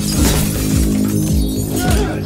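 Glass shattering over dramatic trailer music, which carries low, pulsing hits about twice a second.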